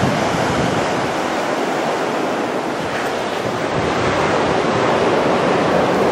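Small ocean waves washing in with a steady rushing sound, with wind buffeting the microphone.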